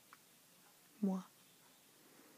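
A single short vocal kiss, a voice saying "mwah", about a second in, over quiet room tone.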